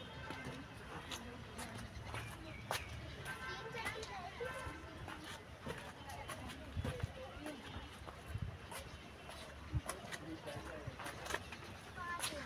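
A young child's high voice in short calls and babble without clear words, with other voices in the background and scattered light taps, likely footsteps on the paved path.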